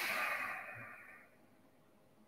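A person breathing out in one audible sigh that starts suddenly and fades away over about a second and a half.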